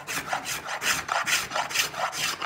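Small finger plane shaving the arching of a figured maple violin plate, in quick repeated scraping strokes about four a second.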